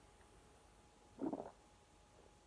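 A man swallowing lager as he drinks from a glass: one short gulp about a second and a quarter in.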